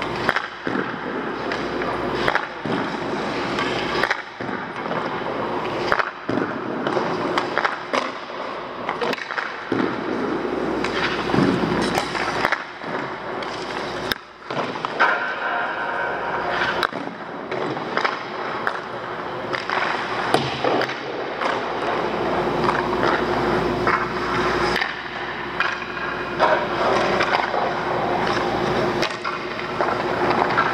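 Ice skates scraping and carving on the rink ice, with scattered sharp clicks and knocks of sticks and pucks.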